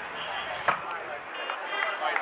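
A single sharp crack about two-thirds of a second in: a cricket bat striking a leather ball. Faint voices are heard behind it.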